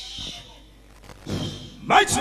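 A man's hoarse, growl-like shouting in two bursts in the second half, the second the loudest.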